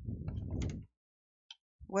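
A dull handling bump and rub lasting under a second as a painted miniature on its holder is picked up from the desk, then a word of speech right at the end.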